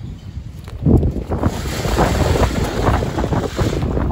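Strong wind buffeting the microphone: a loud gust comes in about a second in, with a low rumble and hiss that carries on.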